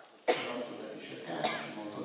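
A man coughing close to a microphone: a sharp first cough about a quarter second in, then a second cough about halfway through, with some voice between.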